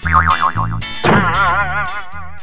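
Bouncy background music with cartoon sound effects: a wavering, boing-like tone in the first second, then a sudden downward swoop and a wobbling warble, a comic effect for a fall.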